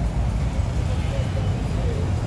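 Busy outdoor ambience: a steady low rumble of vehicles with distant voices of people talking.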